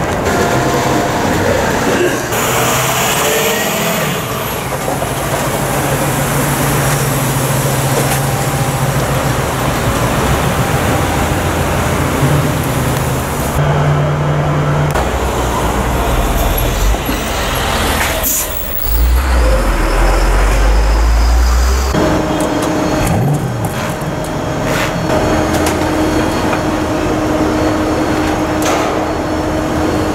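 City street traffic: cars and trucks running and passing. The sound changes abruptly a few times, and in the last third a steady engine hum holds under the traffic.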